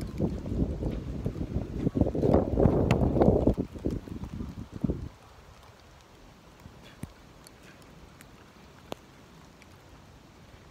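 Wind buffeting the microphone in gusts during a hail and snow storm for about the first five seconds, then dropping away to a faint hiss. Two sharp ticks stand out in the quiet, about seven and nine seconds in.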